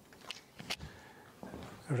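Footsteps on a studio floor, a few soft knocks and scuffs, with a couple of sharp clicks in the first second.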